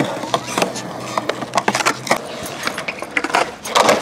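Skateboard wheels rolling over concrete with scattered clicks and knocks, then a clatter of the board hitting the ground near the end as the rider comes off it.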